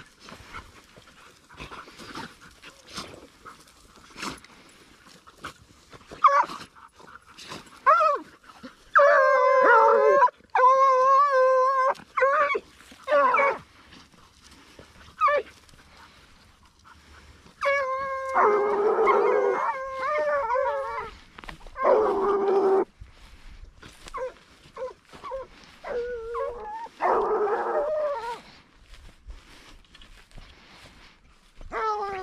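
A pack of Ariégeois scent hounds baying: short yelps at first, then long, wavering howls from several dogs overlapping in bouts about a third of the way in, past halfway and again near the end. This is the hounds giving tongue as they work the ground for scent.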